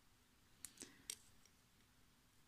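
Near silence, with three faint short clicks within about half a second, a little after the start, from hands working a plastic tatting shuttle and thread.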